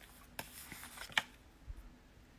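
Tarot cards being handled as one is drawn from the deck: a few faint rubs and small card snaps, the sharpest about a second in.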